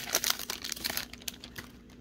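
Trading-card pack wrapper crinkling as it is pulled open and the cards slid out: a run of small irregular crackles that thins out after about a second.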